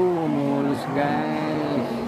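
A voice singing held notes over background music. The pitch steps down from note to note, and a lower note holds near the end.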